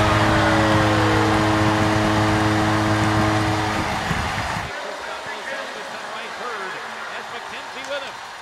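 Arena goal horn sounding a steady low chord over a cheering crowd, stopping about four seconds in. The crowd noise then drops away sharply, leaving a quieter murmur.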